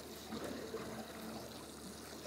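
Sea water lapping and sloshing against a boat's hull, a quiet, steady wash.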